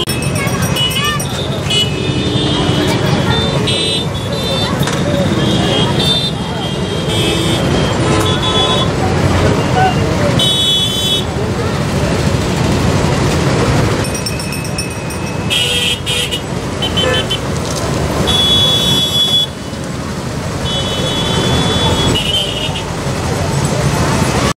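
Congested road traffic: vehicle engines running in a steady rumble, with short horn toots from several vehicles sounding every second or two.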